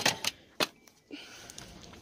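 Close handling clatter: a loud knock right at the start, then two sharp clicks within the first second, followed by faint steady store room tone.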